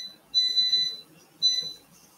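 An electronic appliance beeper sounding high-pitched beeps: the tail of one beep, then a longer beep and a shorter one.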